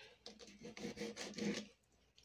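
Faint scraping and rubbing, a few irregular strokes lasting about a second and a half: a knife working on fish being cleaned on a cutting board.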